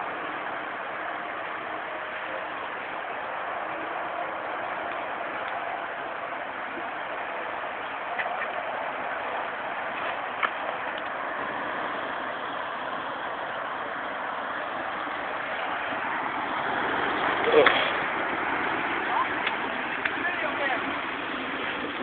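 Jeep Wrangler TJ running steadily at low revs as it crawls down a dirt trail, with a few short knocks. A louder voice-like sound comes about three-quarters of the way through.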